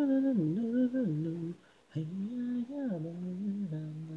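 Isolated a cappella lead vocal of a female singer, with no instruments. She sings a melodic phrase, stops briefly about one and a half seconds in, then carries on singing.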